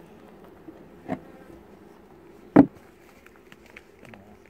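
A wooden hive cover being set down on a Langstroth beehive super: a light knock about a second in, then a much louder, sharp wooden knock about two and a half seconds in, over a faint hum of bees.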